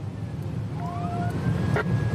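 Police car siren winding up, rising in pitch about a second in and then holding high and slowly sinking, over the steady low drone of the patrol car's engine and road noise inside the cabin. A short steady beep sounds just as the siren begins.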